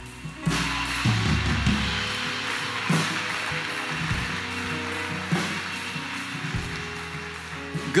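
Congregation applauding: a steady round of clapping that starts about half a second in and slowly tapers off near the end, with soft sustained low music notes underneath.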